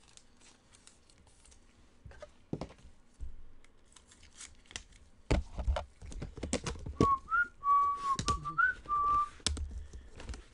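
A person whistling a short tune of a few notes in the second half, over scattered taps, clicks and rustles of trading cards and card packaging being handled.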